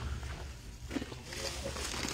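Quiet ambience of a large warehouse store: a steady low hum, with a faint distant voice about a second in.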